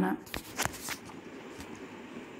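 A few soft clicks and a brief rustle in the first second, then faint steady room tone.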